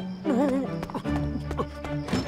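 Cartoon soundtrack music with a wavering tone in the first half second and a low held note entering about a second in, over light quick tapping like comic running footsteps.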